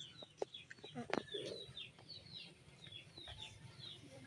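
Faint small birds chirping, a steady series of short, high down-slurred chirps about three a second, with a sharp click about a second in.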